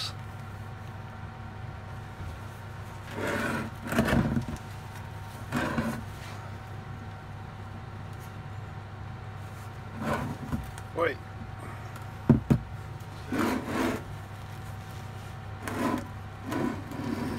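A heavy stone ammonite fossil scraping and knocking against a wooden workbench as it is tilted and turned over, in several short bouts, with one sharp knock a little past the middle. A steady low hum runs underneath.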